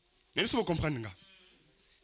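A man's voice through a microphone calls out one drawn-out word, "vous", its pitch falling, about a third of a second in; the rest is quiet room tone.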